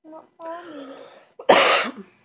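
A child's voice mumbling briefly, then one loud, short cough close to the microphone about one and a half seconds in.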